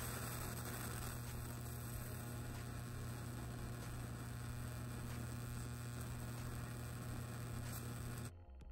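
Tesla candle running, its plasma flame giving a steady electrical hum with a hiss over it.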